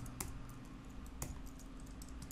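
Computer keyboard keystrokes: a few quiet, separate key presses while a short string of characters is typed.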